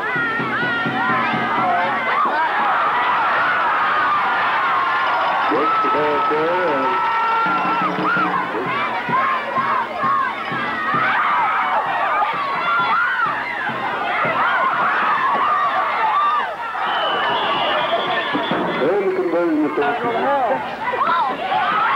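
A crowd of spectators cheering and shouting, many voices overlapping continuously.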